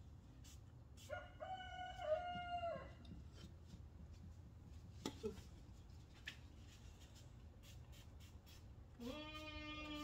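Rooster crowing twice: one long, level call about a second in, and a second, lower crow starting near the end.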